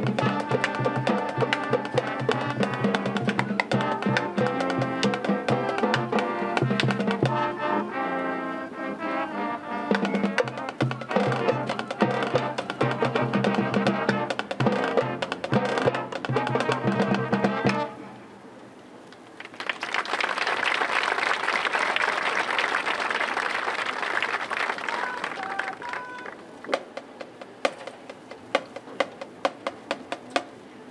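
A high school marching band's brass and drum line play the closing section of their show, then cut off abruptly about two-thirds of the way through. After a brief lull, the crowd applauds and cheers, dying down to scattered claps near the end.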